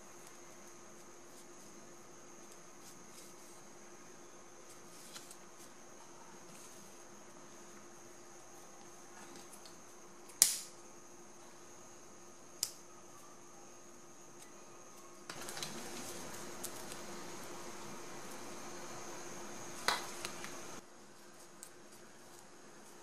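Quiet room with a faint steady hum. About halfway through comes a single sharp click, a lighter being struck to seal the cut end of grosgrain ribbon, then a smaller click. Near the end there are about five seconds of steady hissing noise, closed by another click.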